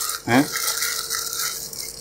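Plastic mailer bag rustling and crinkling as hands rummage around inside it. A short spoken syllable comes about a third of a second in.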